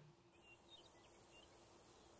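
Near silence: faint outdoor nature ambience with a few faint, short bird chirps.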